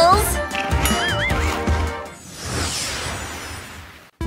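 Background music with a short warbling comic sound effect about a second in, then a whoosh that swells and fades away for a scene transition.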